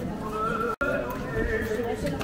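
Several people talking over one another, unclear chatter. The sound cuts out for an instant just before the middle.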